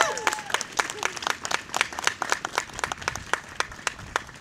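Crowd applauding at the end of a speech, with clearly separate claps that thin out toward the end. A long held shout trails off in the first half second.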